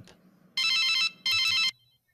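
Telephone ringing: two rings in quick succession, each about half a second long, with a fast warbling electronic tone.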